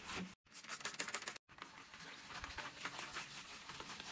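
Faint scrubbing on wet, soapy shower glass: a quick, irregular rustle of small ticks and rubs. It cuts out completely twice, briefly, in the first second and a half.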